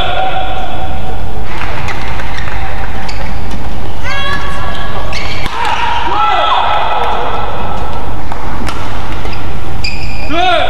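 Badminton rallies in an indoor hall: sharp racket-on-shuttlecock hits under loud, continuous shouting and cheering voices, with drawn-out calls that swell as points are won.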